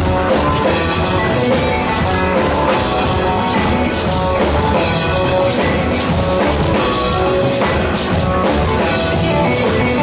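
A live rock band playing loudly and without a break: a full drum kit driving a steady beat under electric guitar and a bowed violin holding sustained notes.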